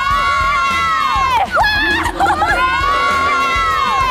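A group of young women screaming and cheering in celebration, with two long, high shouts of about a second and a half each and other shrieks between them. A background music beat runs underneath.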